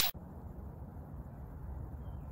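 Steady low background rumble from an outdoor recording, with the tail of a loud whoosh sound effect cutting off right at the start.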